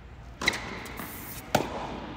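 Tennis ball struck on an indoor hard court: two sharp knocks about a second apart, each ringing briefly in the hall. The second and loudest is a sliced forehand hit on the racket strings close by.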